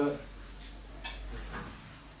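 A man's voice breaks off just after the start; about a second in comes a single brief click over a faint low rumble.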